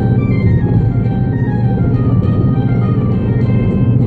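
Steady road and engine rumble of a car at freeway speed, heard from inside the cabin, with music playing over it: a slow descending line of notes.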